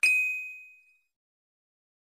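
A single bright, bell-like ding sound effect that strikes sharply and fades out over about a second.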